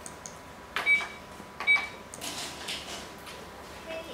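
Two sharp clacks about a second apart as a Go move is played: a stone snapped down on the wooden board and the press of the game clock, with a softer rattle of stones in the wooden bowl after them.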